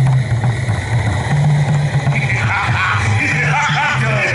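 Dramatic stage background music over the sound system: a repeating low bass-note pattern, joined a little over two seconds in by a higher, wavering melody line.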